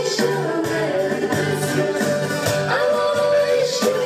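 Dance music with singing over a steady bass beat.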